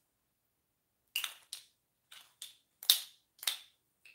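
About six sharp, light clicks in quick, uneven succession, starting about a second in, from small hard objects being handled and knocked together.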